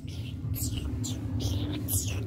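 Fabric rustling and phone handling noise as the phone is swept over blankets and plush toys, in several short scuffs over a steady low rumble.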